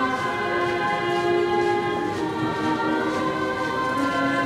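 Slow, solemn sacred music in long, steady held chords, the notes changing every second or so.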